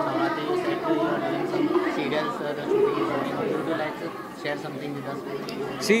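Indistinct, overlapping voices of people talking in a large room, with no single clear speaker.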